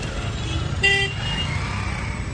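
Low steady rumble of slow road traffic heard from inside a car, with one short vehicle horn toot about a second in.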